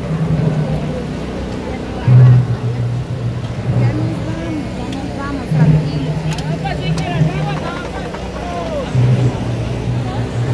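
Deep, steady held notes, most likely low brass from a procession band, alternating between two pitches in blocks of about two seconds. Crowd voices are heard over them.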